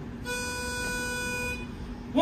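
A single steady, reedy note from a pitch pipe, held for about a second and a quarter and then stopped, giving the a cappella group its starting pitch.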